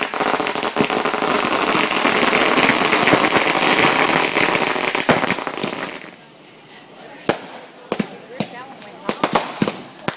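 Consumer fireworks set off on the ground: about six seconds of dense, rapid crackling and popping, which cuts off suddenly. After a short lull, a series of separate sharp pops as the next firework starts going off.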